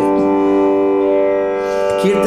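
Steady tanpura drone sounding alone, a rich, unchanging chord of many overtones with no singing over it.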